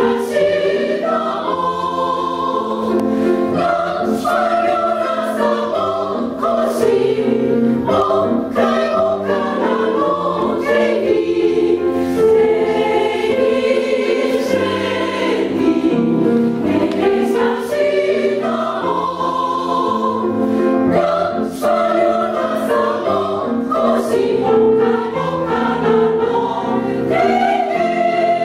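Women's choir singing in parts, with sustained held chords and piano accompaniment.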